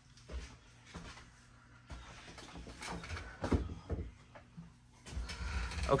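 Scattered knocks, clicks and rustles of objects being handled, with a run of dull thuds about five seconds in.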